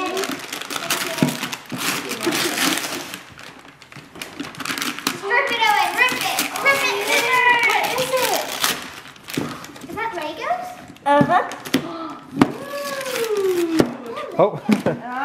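Wrapping paper being torn and crinkled off a gift box, loudest in the first few seconds, with children's voices over it from the middle on.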